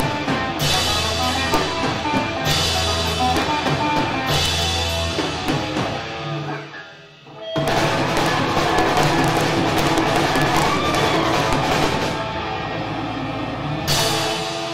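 Live rock band with electric guitars, bass guitar and drum kit playing, heavy low chords landing about every two seconds. About seven seconds in the music almost drops out, then the whole band comes back in full.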